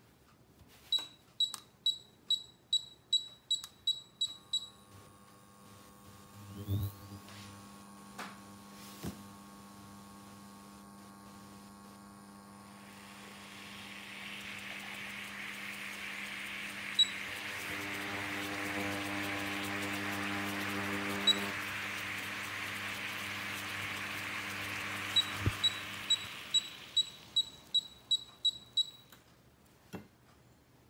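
Miele KM5975 induction cooktop's touch keys beeping, a run of about eleven quick beeps, roughly three a second, as the power is stepped up. The hob then hums steadily from the coil and pan, while the water in the stainless pan heats with a hiss that builds over several seconds, with two single beeps along the way. Near the end another run of about eleven beeps steps the power back down to zero, and the hum and hiss die away.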